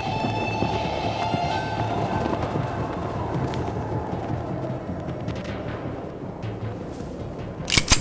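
Tense dramatic film score: a held chord over a busy, rumbling texture, fading slightly. Near the end come two sharp bangs in quick succession, the loudest sounds in the stretch.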